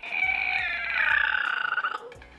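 A drawn-out creak imitating a coffin lid swinging open: one long squeal that slides slowly downward in pitch.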